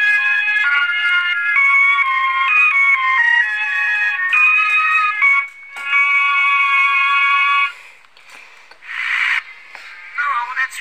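Music: a high-pitched melody of short, quickly changing notes, which stops about three-quarters of the way through. A brief hissy burst follows near the end.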